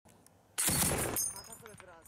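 A short burst of fire from a tripod-mounted heavy machine gun: one sudden, very loud blast about half a second in, lasting about half a second before dying away.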